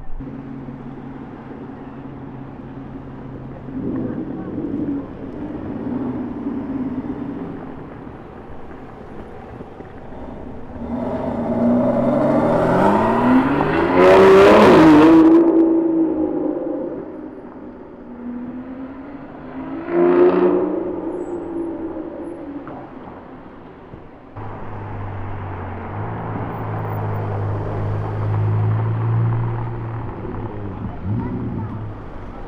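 Supercar engines in city traffic: a Ferrari 812's V12 idling with throttle blips, then an engine revving hard with rising and falling pitch as a car accelerates past, loudest about halfway through, and a second shorter rev burst around twenty seconds in. Near the end a Ferrari F8 Tributo's twin-turbo V8 idles with a steady low hum.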